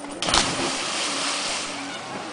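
A person jumping from a cliff and hitting lake water: a sudden loud splash about a quarter second in, followed by a rush of churning water that dies away over about a second and a half.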